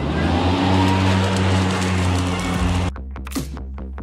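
EGO Z6 battery-powered zero-turn mower with its blades engaged: a steady electric motor hum under the rush of spinning mower blades, rising over the first half second. About three seconds in it cuts off abruptly and electronic music with a beat takes over.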